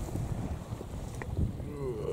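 Low rumble of wind buffeting the microphone, with a few short knocks from the handheld camera being moved about.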